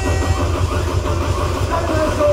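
Loud club music mixed by a DJ and played over the venue's sound system, with a steady pounding bass beat.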